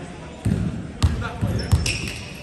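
A ball bouncing on a hardwood gym floor: several dull, echoing thumps, irregularly spaced, with a brief sneaker squeak near the end.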